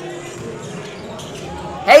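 Basketball bouncing on a hardwood gym court over a spectator crowd's murmur, followed near the end by a man's loud exclamation "Hey" with a falling pitch.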